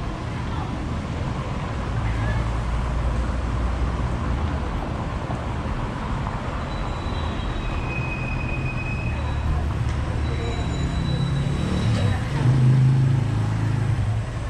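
Downtown street ambience of car traffic: engines of passing cars make a steady low rumble that swells loudest shortly before the end, with background voices of passers-by.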